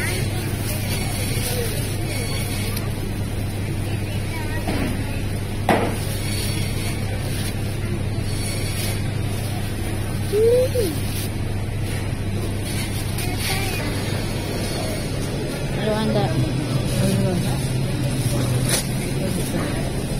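Market-hall ambience: a steady low hum under distant chatter, with thin plastic bag crinkling as it is opened and handled. A sharp knock comes about six seconds in, and a short rising-and-falling call about ten seconds in is the loudest sound.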